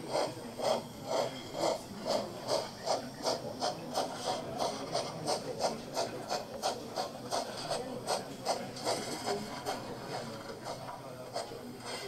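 Steam exhaust chuffing from the onboard sound system of a 1:32 Gauge 1 brass model of a Prussian T 9.3 (class 91.3-18) tank locomotive, played through the small loudspeaker of a production sample as it runs forward. The chuffs keep a regular beat of about two to three a second, quickening a little and growing fainter over the last couple of seconds.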